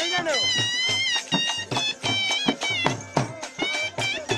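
Live folk dance music: dhol drums beating a fast, steady rhythm under a high, wavering melody from a reed wind instrument.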